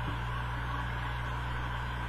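Steady low electrical hum with an even hiss over it, unchanging throughout.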